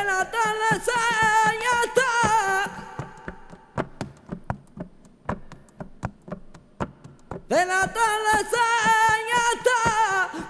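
A male flamenco singer sings a bulería al golpe, its rhythm marked by steady knuckle knocks on a table. He sings a wavering, ornamented line for about three seconds and then breaks off for a respiro, a breathing pause of about four seconds in the letra in which only the knocks go on. He comes back in near the end.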